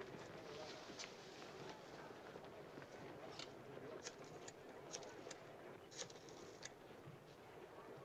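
Near silence: faint room tone with a few faint, short clicks scattered through it.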